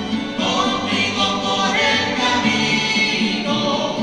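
A church choir singing a hymn in a large, reverberant church, with long held notes.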